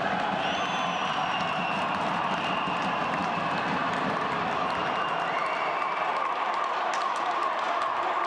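Ice hockey arena crowd noise as spectators react to a scuffle along the boards: a steady din of voices with a few high whistles over it and scattered sharp clicks.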